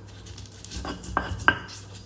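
Stone pestle (ulekan) pounding chopped red chillies in a stone mortar (cobek), crushing sounds with a few sharp knocks in the second half, the one about one and a half seconds in the loudest.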